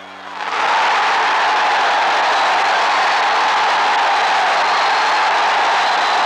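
Football stadium crowd cheering: a loud, steady roar that swells up about half a second in and holds.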